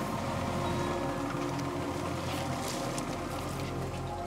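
Background music over the steady rumble and water wash of a boat under way at sea.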